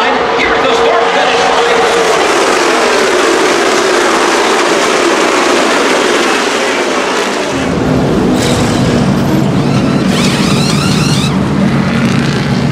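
NASCAR stock cars' V8 engines running past at speed, the engine note falling in pitch as the pack goes by. About two-thirds of the way through the sound switches suddenly to a close, steady, deeper engine note from pit road.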